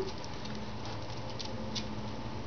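A few light clicks and patter of a small dog's paws and claws on concrete as it weaves between a person's legs. A steady low hum runs underneath.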